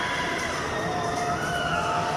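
Riders on a spinning amusement ride screaming, several long cries that rise and fall in pitch and overlap, over a steady din of crowd and ride noise.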